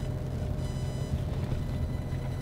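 Steady low rumble of a car's idling engine, heard inside the cabin.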